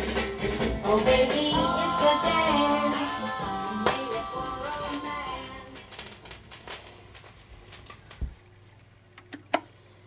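The end of a 1964 pop vinyl record playing on a turntable, the music fading out over the first several seconds. A single low thump comes about eight seconds in, followed by a faint low hum and two sharp clicks near the end.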